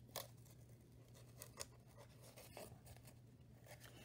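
Near silence with a few faint, short scratches and ticks: hands handling a corrugated cardboard loom and drawing yarn through a notch cut in its edge. A low steady hum runs underneath.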